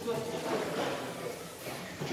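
Faint background voices and room noise, with no clear speech up close.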